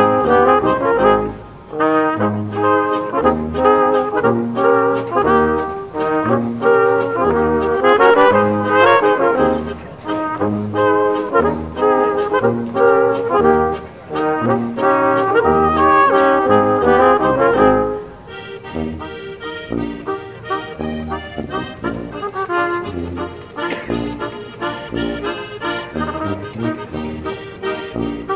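Austrian folk brass band playing a lively tune: flugelhorn and trumpet carry the melody over tuba bass notes on the beat, with accordion and double bass. About 18 seconds in, the horns drop out and the music goes on more quietly, led by the accordion.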